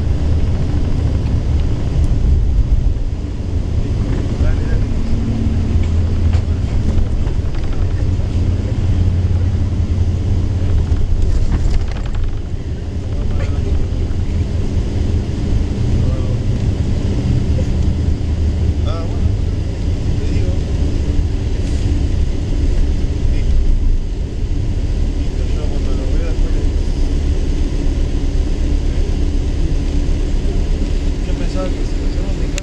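Long-distance coach bus driving along the highway, heard from inside the cabin: a loud, steady low drone of engine and road noise.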